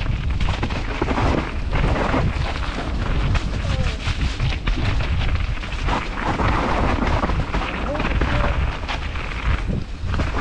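Mountain bike descending a rough forest singletrack, heard from a helmet-mounted camera: a continuous low rumble of wind on the microphone and tyres on dirt, broken by frequent knocks and rattles from the trail.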